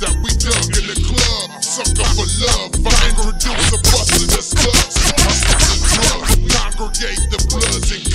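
Screwed-and-chopped hip hop: slowed-down rap vocals over heavy bass and drums.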